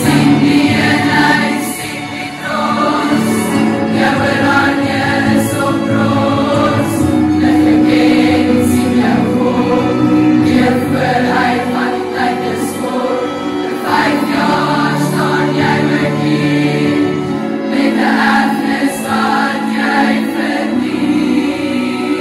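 A large choir of teenage girls singing together, many voices at once, loud and steady.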